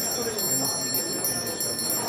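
Small hand bell rung by the chair of the meeting, a bright, high, sustained ringing that calls the session to order, over a murmur of voices in the room.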